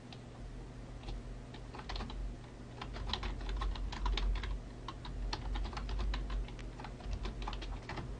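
Typing on a computer keyboard: a run of quick key clicks starting about a second in, thickest in the middle, over a low steady hum.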